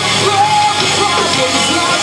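Rock band playing live: electric guitars, bass guitar and drum kit, loud and continuous.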